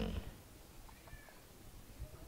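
A man's short voiced hum trailing off about a quarter second in, then quiet room tone with a faint, brief high squeak.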